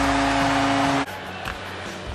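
Arena goal horn sounding one steady note over a cheering crowd after a home goal. Both cut off abruptly about a second in, leaving much quieter arena background.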